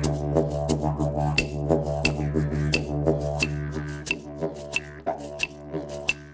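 Wooden didgeridoo played as a continuous low drone, its overtones pulsing in a quick rhythm. From about a second and a half in, a sharp click comes roughly every two-thirds of a second. The drone thins somewhat near the end.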